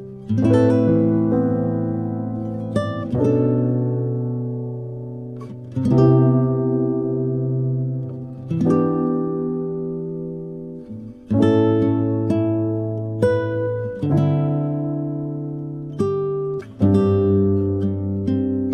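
Background music: a slow plucked-string instrumental, with a chord struck every two to three seconds and left to ring and fade.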